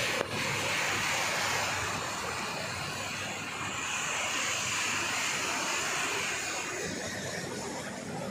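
Sea surf breaking and washing over a rocky shoreline: a steady rush of waves with no distinct pauses.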